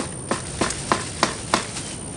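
Shrub branches and twigs crackling and snapping in a string of short, sharp clicks as hands push in among them near the base of the bush, with a steady high-pitched tone underneath.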